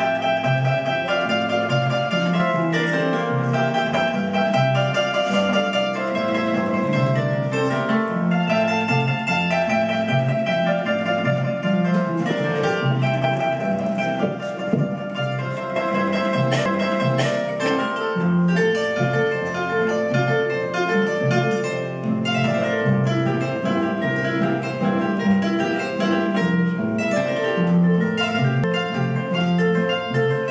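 Harp played live: a tune plucked in the upper strings over a steady, rhythmic bass line in the low strings.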